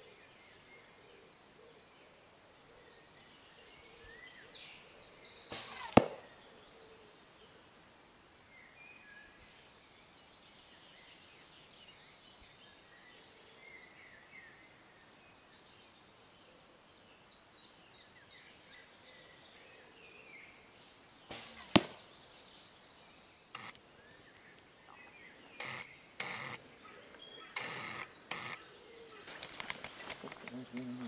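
Two arrows shot at a 3D foam target, each ending in a single sharp smack as it strikes, about sixteen seconds apart. Birds sing between the shots, and a run of lighter knocks follows near the end.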